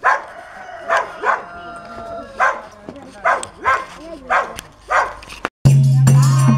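A dog barking repeatedly, about eight short barks at irregular spacing. Just before the end the sound cuts out and music with a low steady drone begins.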